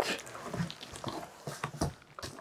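Cardboard shipping box and bubble wrap rustling and scraping as a bubble-wrapped box is pulled out, with scattered soft crinkles and a sharper knock just before the end.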